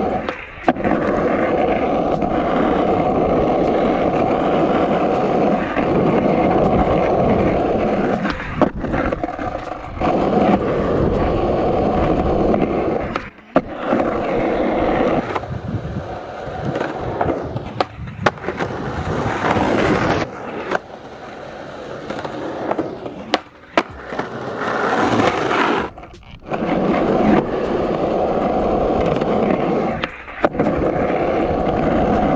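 Skateboard wheels rolling over rough concrete: a loud, continuous rumble broken by several brief drops, quieter for a stretch just past the middle.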